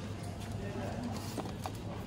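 Light knocks and taps of cardboard frozen-pizza boxes being handled on a freezer shelf, a couple of them sharp, over a steady low freezer hum and distant voices.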